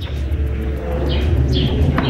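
A steady low rumble, with two faint short high chirps a little past the middle.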